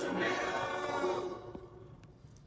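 Cartoon soundtrack playing from a TV: a held, choir-like sung chord that fades out about a second and a half in.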